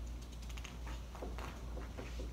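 Dry-erase marker writing on a whiteboard: a quick run of short scratching strokes and taps.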